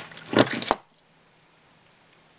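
A quick clatter of small hard objects and sharp clicks in the first second, stopping suddenly, then near silence.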